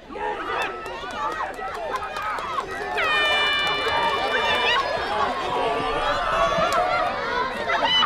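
Rugby sevens spectators shouting and cheering a breakaway run toward the try line, many voices at once, louder from about three seconds in. One long, steady, high call stands out near the middle.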